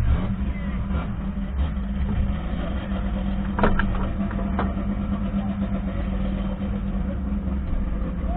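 Race car engine running steadily at one even pitch, picked up by its onboard camera, with two brief clicks about three and a half and four and a half seconds in.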